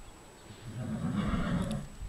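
A horse neighing: one low call, starting about half a second in and lasting about a second and a half.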